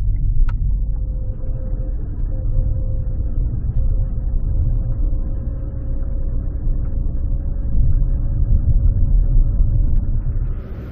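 Car cabin noise while driving slowly: a steady low rumble of tyres and engine, with a faint steady whine above it.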